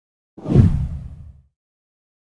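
A single whoosh sound effect with a deep low rumble. It starts about half a second in, swells quickly and dies away by a second and a half.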